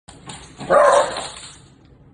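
A small dog barks once, sharply, about three-quarters of a second in.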